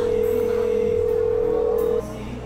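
Telephone call tone on a mobile phone held to the ear: one steady mid-pitched beep lasting about two seconds, starting and stopping abruptly.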